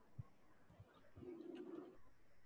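Faint cooing of a pigeon: one low call of under a second, starting about a second in, over near-silent room tone. Soft keyboard taps come earlier.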